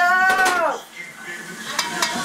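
A metal fork clinking a few times against a white enamel pot of boiling sausages. A person's drawn-out voice falls away in pitch over the first second.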